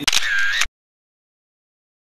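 Camera shutter sound, a few quick clicks over about half a second, cutting off abruptly into dead silence.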